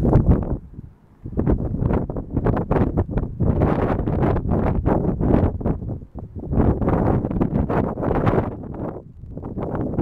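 Wind buffeting the camera microphone in gusts: a loud, rough rumble that drops away briefly about a second in and again near the end.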